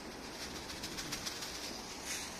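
A flock of feral pigeons feeding on bread crumbs scattered on paving: cooing, with a patter of light clicks and rustles through the middle.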